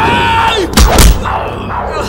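Fight-scene punch and hit sound effects: two heavy, sharp impacts about a fifth of a second apart, just under a second in, preceded by a short held high-pitched sound.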